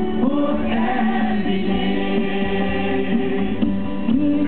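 Live worship song: a woman singing into a microphone, accompanied on a Korg electronic keyboard, amplified through a PA.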